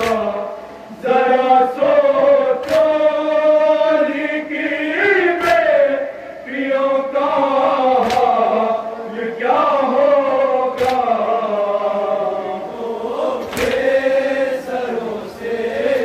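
A noha, an Urdu mourning lament, chanted by a lead male reciter with a group of men joining in long held, wavering notes through a microphone and loudspeakers. A sharp slap cuts through about every two and a half seconds, in time with the chant.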